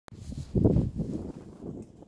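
Wind buffeting the phone's microphone outdoors, a low rumbling gust that swells about half a second in and then eases off.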